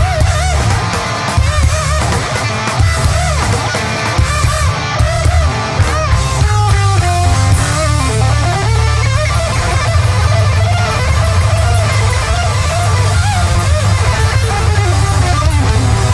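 A heavy garage-rock band playing live and loud: distorted electric guitar with wavering, bending lead lines over a thick bass and drums.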